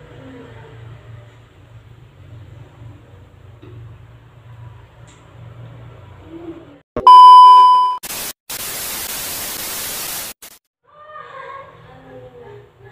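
A loud, steady electronic beep about a second long starts suddenly about seven seconds in. It is followed, after a brief blip, by about two seconds of loud white-noise static that cuts off abruptly. Before the beep there is only a faint low hum.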